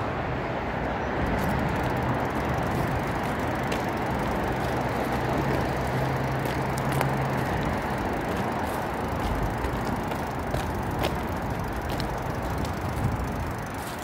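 Steady road traffic noise from a busy main road, an even rushing sound with a low hum lasting a few seconds in the middle.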